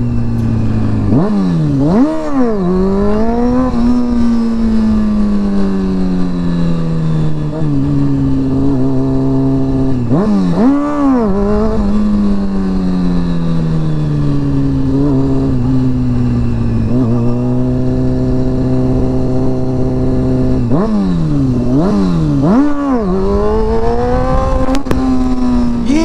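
Honda CBR sport bike engine revving in quick, sharp throttle blips: a couple of seconds in, around ten seconds in, and twice after twenty seconds. These are wheelie attempts, the throttle popped to lift the front wheel. Between them the engine note falls slowly as the throttle is rolled off, over steady wind noise.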